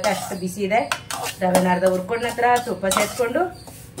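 Metal slotted spatula stirring dry semolina in an aluminium kadai, scraping and knocking against the pan several times.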